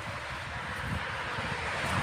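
Konstal 805Na tram set rolling slowly past close by: a steady rolling noise from the wheels on the rails over an uneven low rumble.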